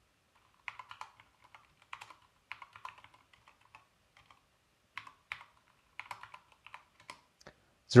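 Keys of a calculator being pressed to key in a short sum: a run of irregular light clicks and taps, starting about a second in.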